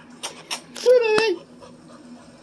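A dog giving a short whine of about half a second, a wavering pitched call, about a second in, after a few short noisy bursts.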